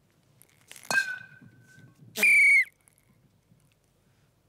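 A sharp knock with a brief ringing tone about a second in, then one short, loud blast on a whistle, marking the moment the timed fake grenade would have exploded.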